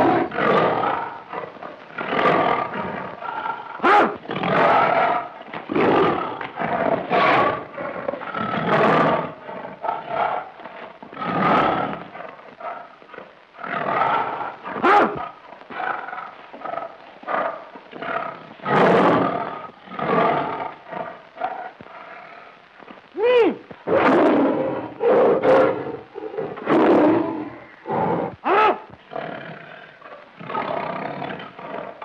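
A tiger roaring and growling over and over, one loud call every second or two, with short gaps between them.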